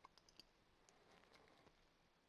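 Near silence: room tone with a few faint computer mouse clicks, mostly in the first half second.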